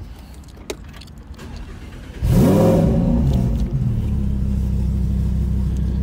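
Lamborghini Huracán's V10 engine starting: about two seconds in it fires with a sudden loud rev that rises and then falls, and by about four seconds in it has settled into a steady, loud idle.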